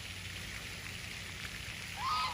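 Steady, even background hiss with no distinct calls or knocks, at a moderate level.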